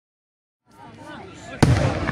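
Crowd voices start up, and about a second and a half in a single loud firework bang goes off and echoes.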